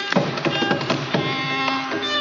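Carnatic concert accompaniment: a quick run of sharp, woody percussion strokes over a steady drone, settling into a few sparser strokes as a held note comes in a little past halfway.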